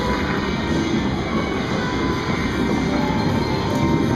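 Video slot machine playing its electronic game music as it moves into its free-games bonus round, over the steady din of a busy casino floor.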